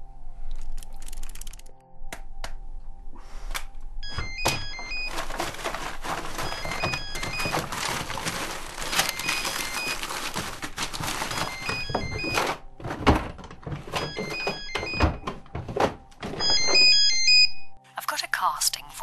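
A string of thuds, knocks and clattering over music, with a telephone ringing in short repeated bursts that are loudest near the end.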